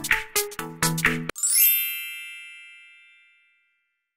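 Electronic music with short plucked notes stops about a second in and gives way to a single bright ding chime that rings out and fades over about a second and a half, followed by silence.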